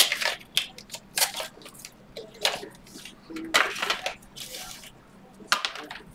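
Hands opening a trading-card pack and handling a clear plastic card case: irregular short rustles, scrapes and clicks of cardboard and plastic, roughly one every second.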